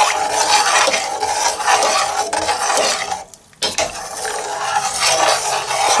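Metal spoon stirring and scraping around a stainless steel saucepan of buckwheat in water, pausing briefly a little past halfway before stirring again.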